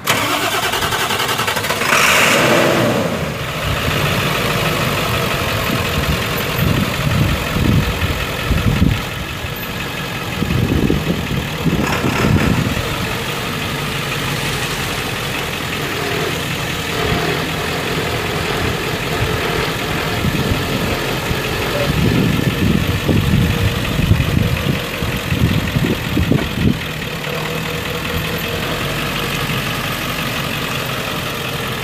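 The 2001 Ford F450 Super Duty's 7.3-litre V8 diesel engine being started near the beginning, with a loud burst as it catches, then running at idle with a few brief swells in level.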